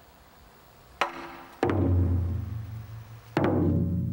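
Taiko drums struck with wooden sticks: after a quiet first second comes a sharp knock, then two heavy strikes about a second and three-quarters apart, each ringing deep and slowly fading.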